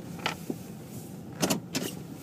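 Low steady cabin hum of a slowly moving car, with a few short sharp knocks and rattles: one just after the start and a louder cluster about one and a half seconds in.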